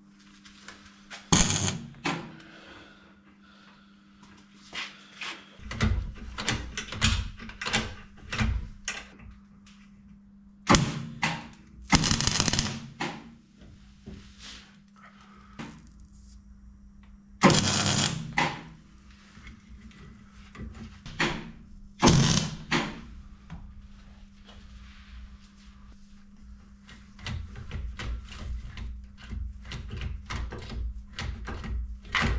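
Metal clicks, clanks and knocks from hand work on a steel gear linkage, with about five loud, sharp clunks spread through it. A steady low hum runs underneath.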